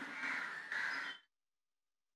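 A crow cawing over faint outdoor street background, picked up on a field reporter's microphone. The sound cuts off abruptly about a second in and drops to dead silence.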